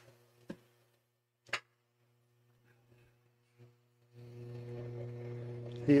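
Near silence with two faint clicks in the first two seconds, then a steady low electrical hum from about four seconds in.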